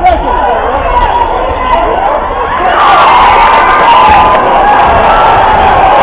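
Basketball crowd in a gym, chatter and shouts that swell into cheering about three seconds in.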